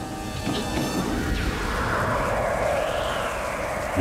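Film soundtrack: music under a steady rushing, rumbling effects layer that swells through the middle and eases toward the end.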